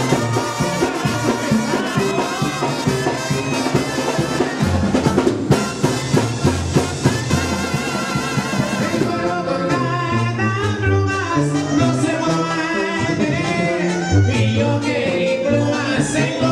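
Mexican banda music: a brass band with drums playing steadily.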